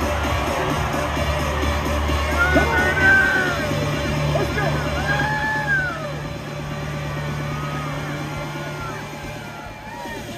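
Loud arena music with a steady low bass, overlaid by voices yelling in rising-and-falling calls during a bull ride; the level drops about six seconds in.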